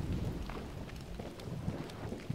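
A low, steady rumble with faint scattered crackles and ticks over it.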